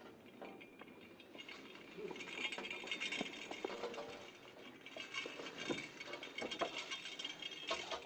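Faint, irregular clinking and light rattling of a Torah scroll's silver finials and soft handling noise as the scroll is set back into the ark, a little busier from about two seconds in.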